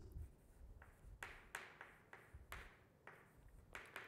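Chalk writing on a blackboard: a handful of faint, short strokes and taps, spaced out with quiet between them.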